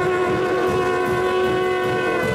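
Live worship band music: a long held chord with a drum beat underneath.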